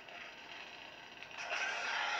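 Crossguard lightsaber's sound effects from its Proffieboard speaker: the crackling unstable-blade hum fades down, then swells into a hissing surge about one and a half seconds in as the blade shuts off.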